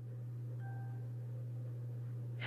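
A steady low hum, with a faint, brief chime-like tone a little after half a second in.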